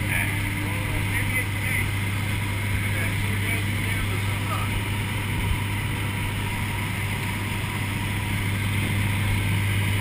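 Aircraft engine drone heard inside the cabin of a skydiving jump plane: a steady low hum with a constant rush of noise, holding even throughout.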